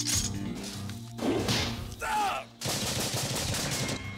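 Film soundtrack of automatic rifle fire: rapid bursts of shots that begin abruptly, with a louder stretch carrying a wavering tone in the middle, a short break just after two and a half seconds, then more rapid fire.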